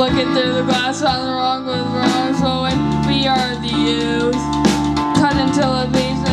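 Live rock band playing an instrumental passage: electric guitar, bass and drum kit, with held, bending lead notes over a steady beat.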